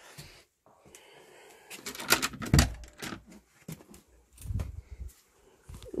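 Irregular knocks and clicks with some rustling between them, the loudest knock about two and a half seconds in and another group about four and a half seconds in.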